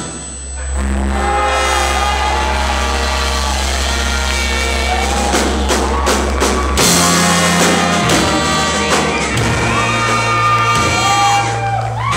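Live band with a brass horn section of trumpets and trombones, plus saxophone, electric guitar and drums, playing. After a brief drop right at the start, long held notes that bend in pitch ride over slow, sustained bass notes that step up twice.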